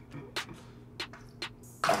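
Three faint, short splashes at the surface of a home aquarium as a largemouth bass strikes at a hand-fed goldfish. A man's loud exclamation begins near the end.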